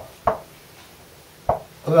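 Two sharp taps of a marker against a whiteboard, about a second and a quarter apart.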